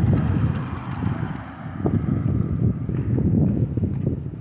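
Wind buffeting the microphone, an irregular loud rumble, with a few faint footstep clicks on a concrete sidewalk during a dog walk.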